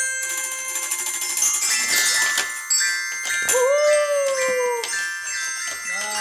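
Several small toy wind instruments blown at once, a jumble of shrill held notes. About three and a half seconds in, a lower tone swoops up and then slowly sinks for about a second.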